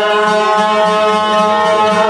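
Albanian long-necked lutes (çifteli) plucked in a steady passage of folk music.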